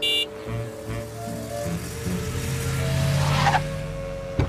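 Cartoon background music that opens with a brief bright chime sting. Under it a car is heard approaching, growing louder toward the end.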